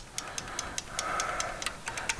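Rapid, light, even ticking, about six ticks a second.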